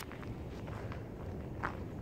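Footsteps crunching on dry fallen leaves and scattered litter, several steps with one louder crunch near the end, over a steady low rumble.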